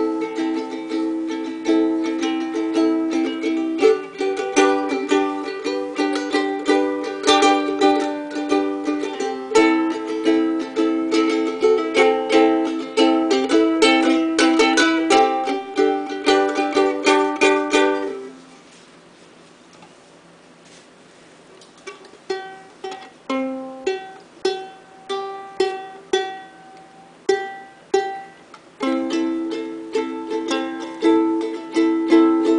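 Kamaka ukulele strummed in quick, busy chords, dropping to quiet for a few seconds about two-thirds of the way through, then played more sparsely in single notes and light chords before full strumming comes back near the end.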